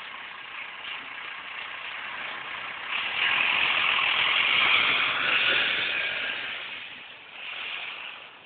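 Single-deck bus driving past close by: its engine and tyre noise swells about three seconds in, is loudest mid-way and fades away near the end.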